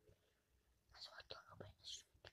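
Near silence, then from about a second in a boy whispering faintly close to the microphone, with a few soft clicks.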